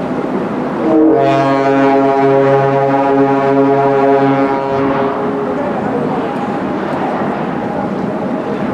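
Ship's horn of the M.S. Oldenburg sounding one long, low, steady blast of about three and a half seconds, starting about a second in.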